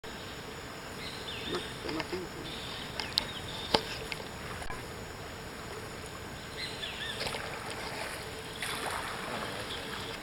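Kayak moving on a slow river: paddle strokes in the water and a few sharp knocks, the loudest just before four seconds in, against a steady background, with faint distant voices.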